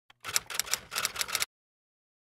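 Typewriter-style typing sound effect: a quick run of about ten clicks lasting just over a second, stopping about halfway through.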